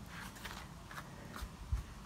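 Faint handling noise: a few light, scattered clicks and a soft low thump near the end.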